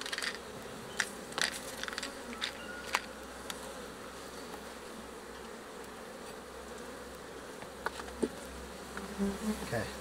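Steady hum of an open colony of African honeybees (Apis mellifera scutellata), with a series of sharp clicks and scrapes in the first few seconds and a couple more later as a metal hive tool pries the wooden frames loose.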